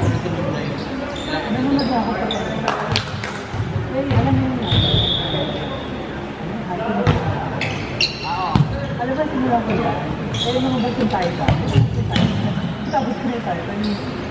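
Indoor volleyball rally: sharp smacks of hands and arms hitting the ball, shoes squeaking on the wooden court, and players' voices calling, all echoing in a large hall.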